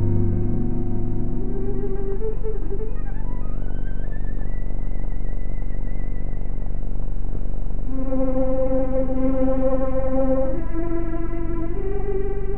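Orchestral music on a 1936 film soundtrack: long held notes, an upward glide about three seconds in to a high held note, then fuller sustained chords from about eight seconds, over a steady low hum.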